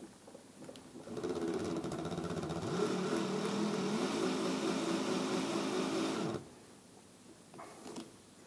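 Cordless drill motor running for about five seconds with a steady whine that wavers slightly in pitch. It spins a bent-nail hook in the chuck, twisting the wire's looped ends into a tight coil, and stops suddenly.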